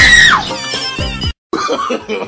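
Background music with a loud, short scream at the start that rises and then falls in pitch. The sound drops out for an instant about a second and a half in, and a voice follows.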